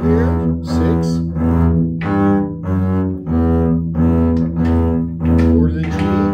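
Double bass bowed at a slow practice tempo, playing a line of separate quarter and half notes in D major, each note held steadily with a short break before the next.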